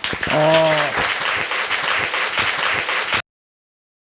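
Audience applauding, with a person's voice briefly heard over it near the start; the applause cuts off abruptly a little after three seconds in.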